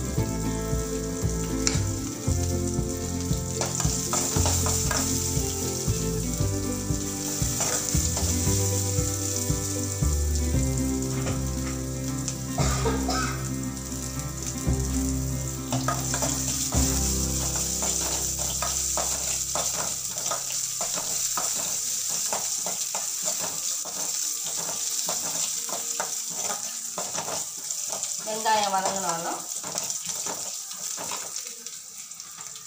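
Sliced garlic and dried red chillies frying in hot oil in a metal kadai, a steady sizzle, with a steel spoon stirring and scraping against the pan in short clicks. Low steady background tones fade out about two-thirds of the way through.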